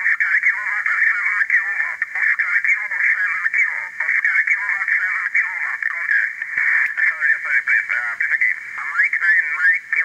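Single-sideband amateur radio voices on the 20-metre band, received by an RTL-SDR and played through the Vivid Unit's small internal speaker: thin and tinny, with no bass or mid-range, over a light band hiss.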